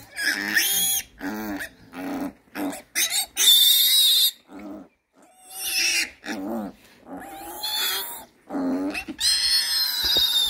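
A one-day-old piglet squealing over and over in short, piercing cries while it is held for clipping of its needle teeth with pliers: distress squeals at being restrained and handled. The longest and loudest squeals come about three and a half seconds in and again near the end.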